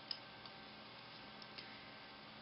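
Soft clicks of bamboo double-pointed knitting needles touching as stitches are worked: a few faint ticks, the first about a tenth of a second in and the sharpest.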